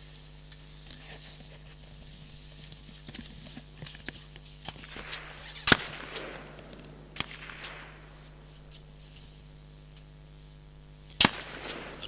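Rifle shots from a firing line of several shooters: two sharp reports about five and a half seconds apart, with a few fainter cracks between them.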